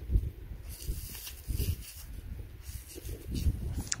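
Wind rumbling on the microphone, uneven and gusty, with a few faint rustling and handling clicks.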